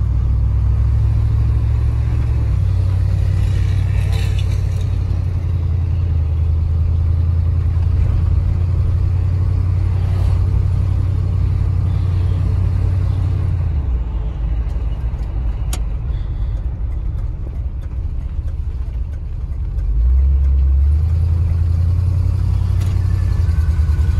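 Ford 390 V8 of a 1974 Ford F250 running while the truck is driven, heard from inside the cab: a steady low rumble that dies down about 14 seconds in and picks up again, louder, around 20 seconds in.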